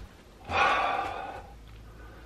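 A man's breathy exhale, like a sigh, starting about half a second in and fading over about a second, then only a faint low hum.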